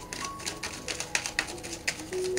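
Irregular light clicks and taps, several a second, with faint soft held tones behind them.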